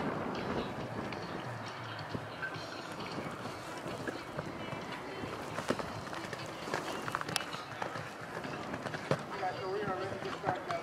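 Horse cantering on sand arena footing, its hoofbeats under a steady background of voices, with a few sharper knocks scattered through.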